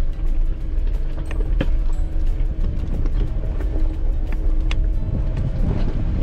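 Jeep Wrangler Rubicon crawling over a loose rocky trail, heard from inside the cabin: a steady low engine and drivetrain rumble, with scattered knocks and rattles as the loaded rig shakes over the loose rock.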